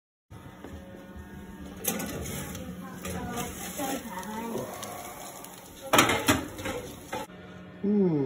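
Kitchen cookware being handled, with sharp clanks about two seconds in and twice around six seconds in, over a faint voice in the background.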